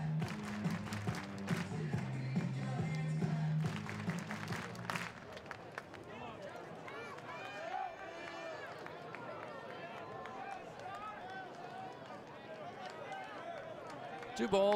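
Ballpark PA music with a stepped bass line for about the first five seconds over crowd noise, then fainter background voices and crowd murmur.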